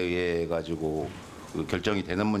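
A man speaking, opening with a long drawn-out hesitation sound before his words resume.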